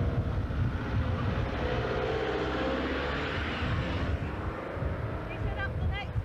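Wind buffeting the microphone with a gusty low rumble, over the drone of an engine that swells and fades about two seconds in.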